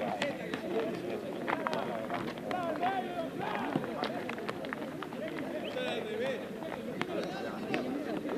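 Many overlapping voices of footballers and onlookers calling out around the pitch, indistinct and steady in level, with scattered sharp clicks.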